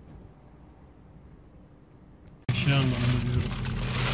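Faint low rumble of a car cabin, then an abrupt cut about two and a half seconds in to a much louder stretch: a voice with a falling pitch over the steady hum of a car engine running.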